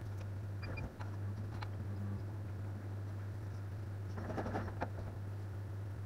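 Steady low mains-frequency hum of the idling CO2 laser cutter and its ancillaries, not yet cutting. A faint short high beep comes under a second in, with a few light clicks and a brief soft rustle about four seconds in.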